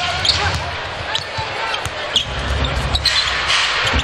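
Arena game sound: a basketball dribbled on the hardwood court, with a few short sneaker squeaks over a steady crowd murmur.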